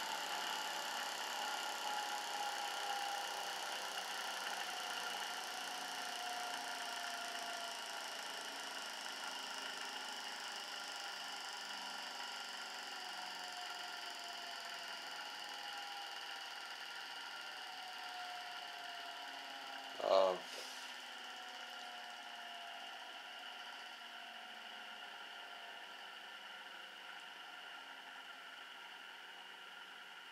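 Homemade dual opposing-rotor magnetic motor running, with a steady high-pitched electrical whine from its FET-switched drive coils and fainter tones that keep sliding down in pitch. It grows slowly quieter over the half minute, and there is a brief voice-like sound about twenty seconds in.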